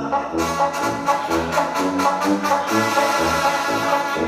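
Recorded backing track playing an instrumental break, with a steady beat and a bass line.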